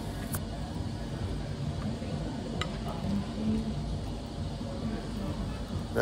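Steady low hum of a café dining room, with two light clicks of cutlery against a plate, about half a second in and again about two and a half seconds in.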